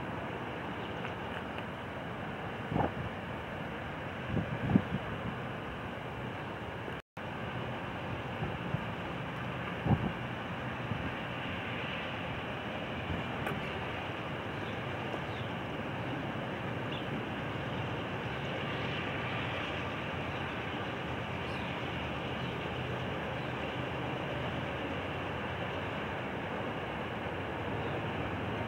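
Distant approaching CSX diesel locomotive, a steady low rumble and hum under open-air wind noise, with a few sharp thumps near the start.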